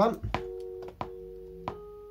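Electric piano loop playing back: a chord struck about every two-thirds of a second, each ringing on steadily until the next.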